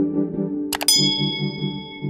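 Two quick mouse-click sounds about three-quarters of a second in, followed by a bright bell ding that rings on for over a second: the click-and-notification-bell sound effect of a subscribe animation, over soft synthesizer background music.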